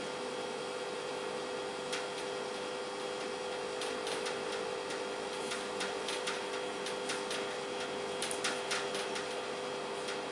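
Marker pen writing on a whiteboard: a scatter of short scratchy strokes and taps, thickest in the second half, over a steady electrical hum.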